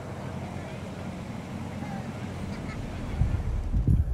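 Faint, distant voices of people by the river at night, over a steady hiss. About three seconds in, the low rumble and bumping of a vehicle driving on a dirt road comes in and grows louder.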